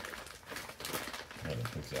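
Rapid, irregular crackling rustle of something being handled, with a man's voice starting near the end.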